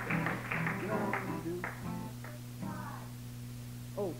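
Acoustic guitar picked lightly between songs, a few short notes ringing over a steady low hum on an old live tape recording.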